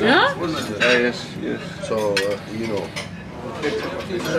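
Forks and knives clinking and scraping on dinner plates at a shared table, with voices talking over it.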